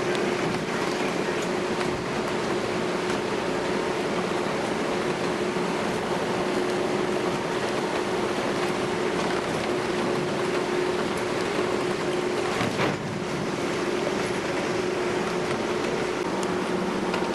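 Steady drone of the Green Island Star 3 ferry under way, heard inside its passenger cabin: engine and hull noise with a constant hum. One brief knock about three seconds before the end.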